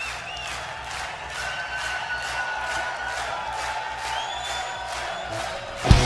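Live rock band with a steady, fast drum beat under a cheering, whistling concert crowd. The full band, with electric guitars, crashes in with a loud hit just before the end.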